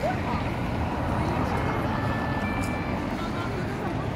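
Street traffic ambience: a steady rumble of cars and buses moving around a cobbled square.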